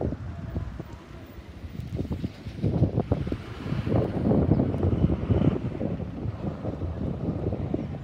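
Wind buffeting the microphone in gusts, a low rumble that swells about a third of the way in and eases off toward the end.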